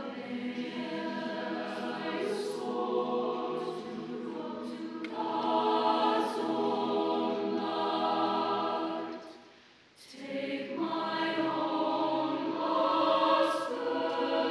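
Mixed choir singing sustained chords in several voice parts, with soft sibilant consonants. About ten seconds in, the sound dies away to a brief pause at a phrase break, then the choir comes back in.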